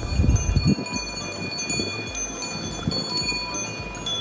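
Bells worn by a herd of grazing cattle and goats clinking irregularly as the animals move, several ringing tones at different pitches overlapping.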